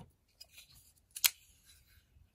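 A folding knife being handled and laid down on a cutting mat: faint rustling, then one sharp click about a second in.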